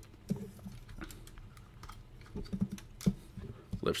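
Plastic Transformers Bludgeon action figure being handled during transformation: scattered light clicks and taps of its plastic parts and joints, with a quick cluster of clicks about two and a half seconds in.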